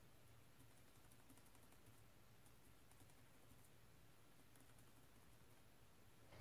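Near silence: room tone with a faint low hum and a few scattered faint ticks.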